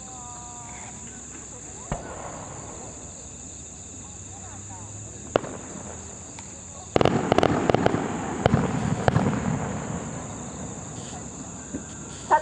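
Aerial fireworks going off: single bangs about two seconds in and again near halfway, then from about seven seconds a rapid run of crackling reports with a rolling low rumble that fades over a few seconds. Crickets chirp steadily underneath.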